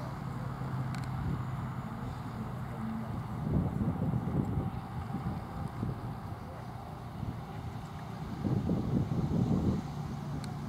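Wind buffeting the microphone in two gusts, about three and a half seconds in and again near the end, over a steady low hum.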